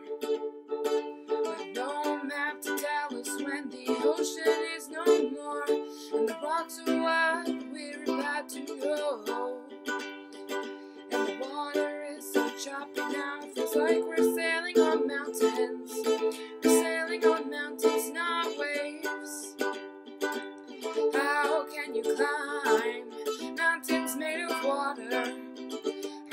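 Soprano ukulele strummed in a steady rhythm through a chord progression, as an instrumental break with no singing.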